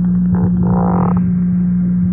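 Steady low electrical hum on an old analog radio interview recording, with a brief snatch of a voice about half a second in.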